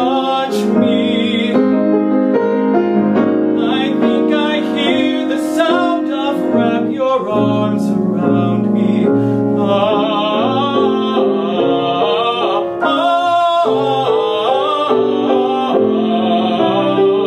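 A man singing in a trained, operatic style with vibrato, accompanied by piano.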